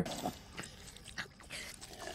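Wet chewing and smacking of a cartoon character gobbling pizza, in short irregular bursts.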